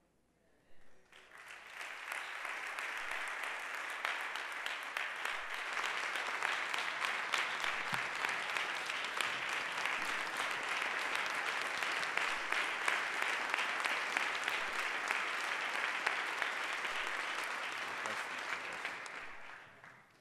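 Congregation applauding: many hands clapping, starting about a second in, building quickly to a steady level and fading out near the end.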